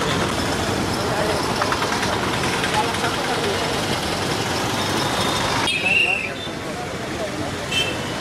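Busy street noise, traffic hum mixed with people's voices. About six seconds in it cuts off suddenly to a quieter stretch where people are talking.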